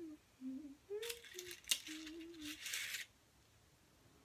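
A short hummed tune in wavering steps, with crisp clicks and rustling of a paper candy cup as a chocolate is picked out of the box; it all stops about three seconds in.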